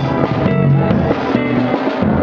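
A guitar, bass and drum kit trio playing jazz live, with a hollow-body archtop guitar carrying the line over a bass line and drums.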